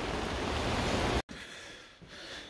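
Heavy rain falling on a fabric marquee tent, a steady hiss that cuts off suddenly about a second in, leaving faint room noise.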